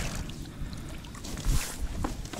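Water splashing as a hooked zander thrashes at the surface beside an inflatable boat, with a sharper splash about one and a half seconds in.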